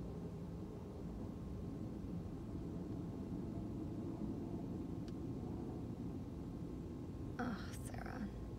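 Steady low rumble inside a stationary car's cabin, with a faint tick about five seconds in and a brief breathy vocal sound near the end.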